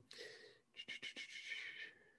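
A man's faint breathing between sentences: a soft intake of breath, then a few small mouth clicks and a faint, slightly whistly breath.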